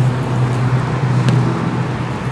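Steady low drone of a vehicle engine running, with one light click a little over a second in.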